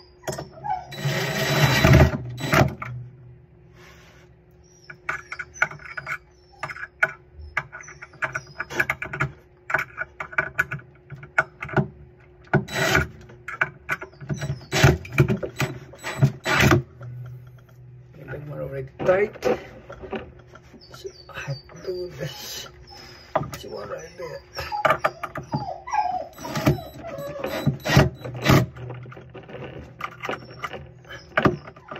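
Cordless drill driving the screws that hold a faucet's valve bodies under a sink. It runs in short bursts, the longest about a second in, with scattered clicks and knocks of the bit on the fittings in between.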